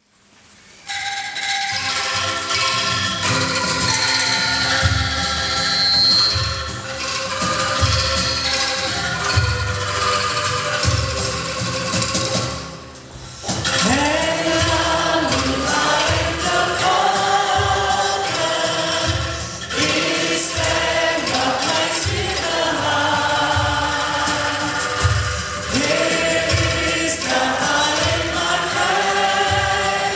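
An Indonesian church hymn with instrumental accompaniment and a low regular beat, starting about a second in. After a short break about 13 seconds in, a choir with three lead singers comes in singing over it.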